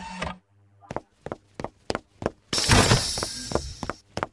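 Animated footstep sound effects, about three steps a second, then a loud crash about two and a half seconds in that fades over roughly a second.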